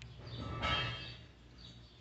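A bird chirping in short, high calls that repeat about every half second, with one louder, briefly ringing sound about half a second in.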